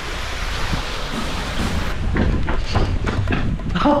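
Rushing, rumbling wind and handling noise on a body-worn camera's microphone as the wearer moves quickly, with a run of small knocks and rustles in the second half.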